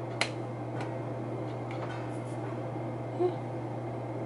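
Quiet room tone with a steady low hum, broken by a sharp click just after the start and a fainter click a little later.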